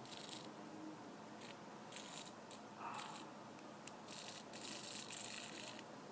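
Small hobby RC servo buzzing faintly in short, irregular bursts, with a longer burst near the end: it is vibrating instead of holding its position.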